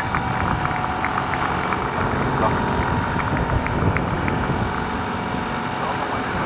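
Large electric-powered tandem-rotor scale model helicopter hovering low, its two rotors giving a steady, loud chop with a steady high whine over it.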